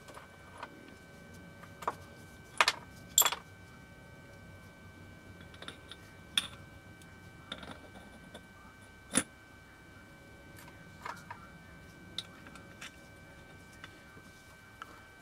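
Small metal planetary gears and gear housing of a cordless screwdriver clicking and clinking as they are handled and fitted back together on a wooden bench: scattered sharp clicks, the loudest a close pair about three seconds in and another just past the middle.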